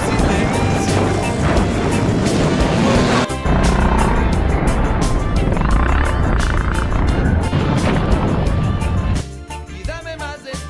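Small motorcycles riding on a dirt track, heard as engine and wind noise over background music. The riding noise drops away about nine seconds in, leaving the music.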